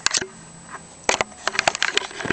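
Sharp clicks and taps from a handmade chipboard-and-cardstock mini album being handled and shifted: two at the start, then a quick run of them in the second half.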